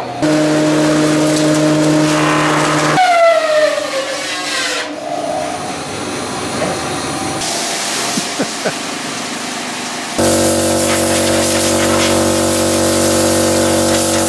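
Woodworking machinery in a carpentry shop, running with a steady hum. About three seconds in, a machine winds down with a falling whine. About ten seconds in, a louder machine hum starts and runs on.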